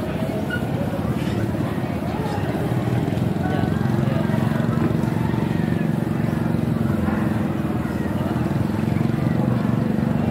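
An engine running at a steady speed, getting a little louder about three seconds in, with people talking in the background.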